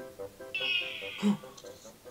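Audio clip saved with an instax mini Liplay print, playing back from a smartphone speaker after the print's QR code is scanned. About half a second in there is a high, thin sound, then a short lower voice-like sound, over background music.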